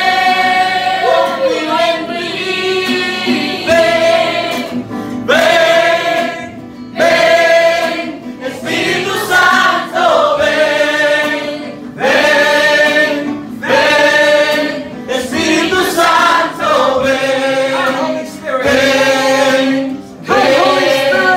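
Gospel worship singing: a man's voice leads through a microphone with a group singing along, over an acoustic guitar, in sung phrases broken by short pauses.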